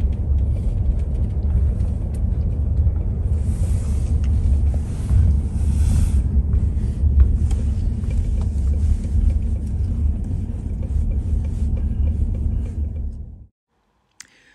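Steady low road-and-engine rumble inside a slowly moving car's cabin, cutting off suddenly near the end.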